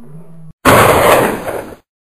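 A faint low tone, then after a brief gap a sudden loud crash-like impact sound effect, noisy and full-range, lasting about a second before it dies away.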